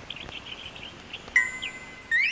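Cartoon sound effects: a few quick, faint high chirps, then one bright chime ding about a second and a half in that rings on.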